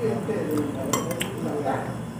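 Metal spoon clinking against a plate while scooping food, with a few sharp clinks around the middle.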